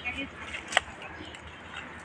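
A single sharp click a little before the middle, a plastic mug knocking against a plastic water bucket, over a quiet background.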